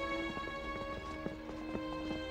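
Background music of long held tones, over a quick, uneven clatter of hurried footsteps on stone paving.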